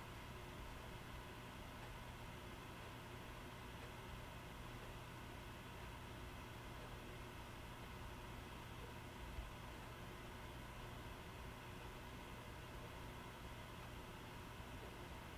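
Faint room tone: a steady hiss with a low, even hum and one faint tap a little past the middle.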